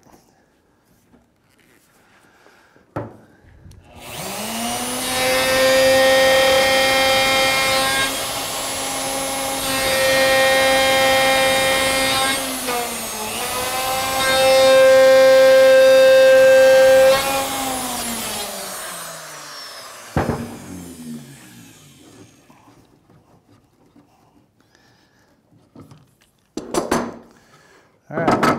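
Router switched on about four seconds in, spinning up to a steady high whine as a pattern bit cuts the cheek and shoulder of a tenon. Its pitch sags briefly under load partway through, and then it is switched off and winds down. A click comes before it starts, a knock as it winds down, and a few clatters near the end.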